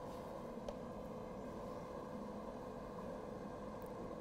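Quiet room tone with a faint steady hum and one small click about a second in.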